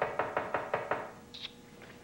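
Rapid knocking on a door: about six quick, evenly spaced knocks over roughly a second, then a brief high squeak.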